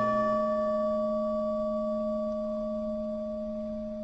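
A Buddhist bowl bell rings out from a single strike just before, one steady tone with a few higher overtones, slowly fading. It is the bell that marks the invocations of Buddha names in Vietnamese chanting.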